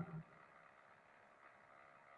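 Near silence, after the last trailing syllable of speech fades right at the start.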